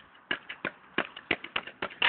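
Metal blade of a long-handled ice chopper striking pavement as someone hops on it like a pogo stick: a quick, irregular string of sharp taps, about ten in two seconds.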